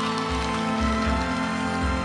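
Background music: sustained chords held steady over a recurring low bass pulse.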